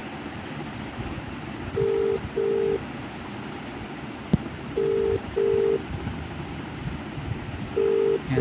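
Mobile phone ringback tone while an outgoing call waits to be answered: a low double ring, two short beeps, repeating about every three seconds and heard three times. A single sharp click sounds about four seconds in.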